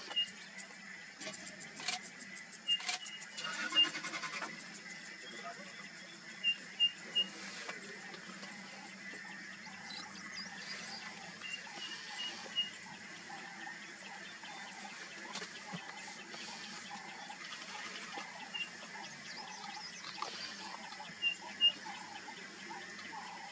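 Birds calling in the open: groups of three or four short, high notes at one pitch, repeated every few seconds over a faint steady background, with a few sharp clicks near the start.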